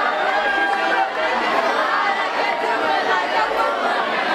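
Crowd chatter: many voices talking and calling out at once in a busy club, with no singing.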